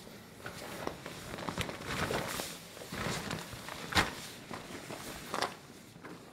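Rustling and scuffing of tent fabric and mesh as people move at the tent's doorway, with a few sharp crackles and snaps, the loudest about four seconds in.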